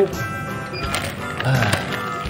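Background music, with a few light clicks and the rustle of a clear plastic bag as a plastic toy fish is dropped into it, about a second in.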